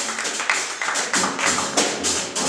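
Live small-group jazz: upright double bass, drum kit keeping time with steady cymbal strokes, and piano playing together.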